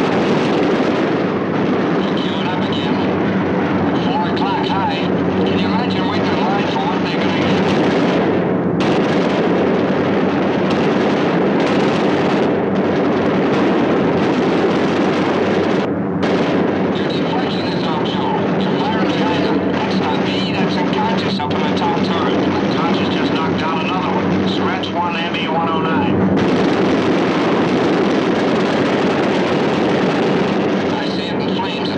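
Steady, loud drone of B-17 Flying Fortress engines, heard continuously with no let-up, with indistinct voices faintly under it at times.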